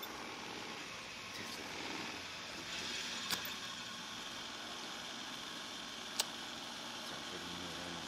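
Steady background noise with two sharp clicks, the second about three seconds after the first.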